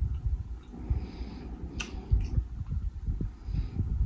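Person drinking water from a plastic bottle, picked up close by a clip-on mic: a run of soft, low swallowing gulps, with two sharp clicks a little under two seconds in.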